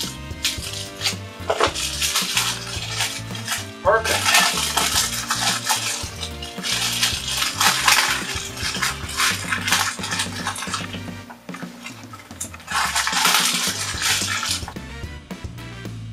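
Plastic packaging crinkling and rustling in several bursts as magnetic whiteboard erasers are worked out of it, with clicks and clacks as the magnetic erasers knock and snap together while being stacked. Background music runs underneath.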